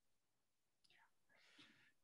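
Near silence in a pause between speakers, with one very faint brief sound about one and a half seconds in.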